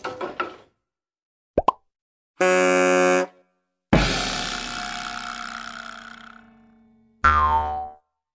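A string of cartoon sound effects with silence between them: a quick rising pop about one and a half seconds in, a short held tone, then a struck ringing note about four seconds in that fades away over some three seconds, and a last short tone near the end.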